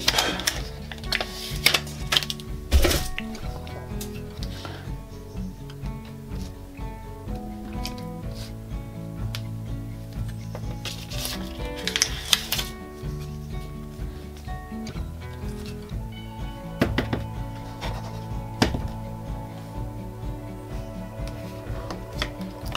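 Background music of held, stepping notes, with a few sharp knocks and clicks from craft materials being handled on a desk.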